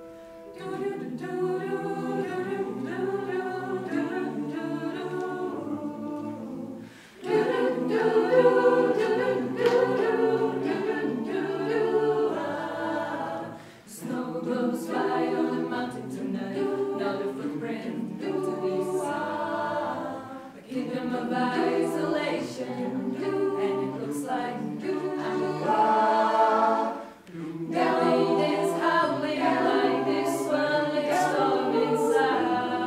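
Mixed chamber choir of women's and men's voices singing a cappella, in phrases broken by short pauses about every six to seven seconds.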